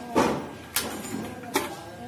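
Three sharp metallic clicks from a motorcycle's locking fuel-tank cap as a key is turned in it and the cap is worked open, the first the loudest.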